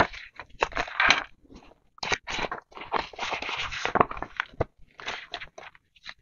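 Hands handling a ring-bound cash budget binder: crinkly rustling of its plastic envelope pages and paper, with small clicks and taps, in irregular bursts.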